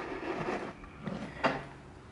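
Faint handling noise: a speaker wire and hands rubbing against a subwoofer's plastic basket, with a brief tap about one and a half seconds in.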